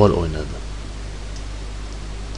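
A spoken word ends right at the start, then a steady hiss with a low hum underneath: the recording's own background noise in a pause of speech.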